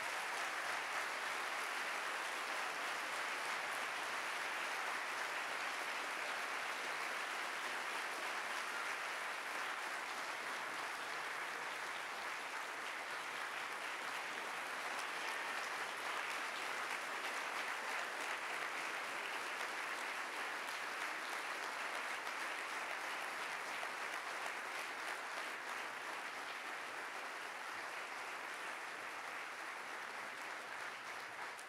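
A large audience applauding steadily, easing off a little near the end.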